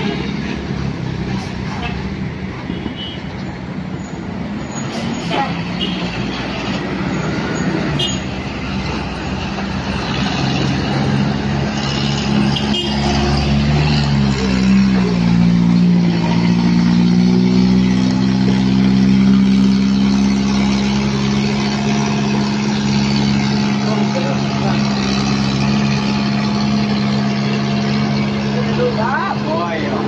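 Heavy bus diesel engine running at a hairpin bend, amid other passing traffic. About halfway through its pitch dips, then holds steady and grows louder.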